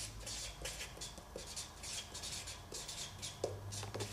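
Marker pen writing a word on a paper sheet: a quick run of short, faint strokes.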